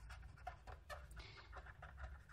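Near silence: faint scratching of a felt-tip marker writing on paper, over a low steady hum.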